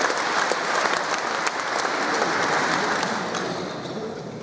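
Audience applauding, dying down near the end.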